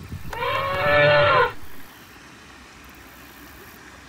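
Elephant trumpeting: one loud call of about a second shortly after the start, arching slightly in pitch and trailing off in a short, softer tail.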